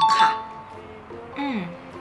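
A short bright chime sound effect right at the start, ringing out within about half a second, over soft background music with steady notes.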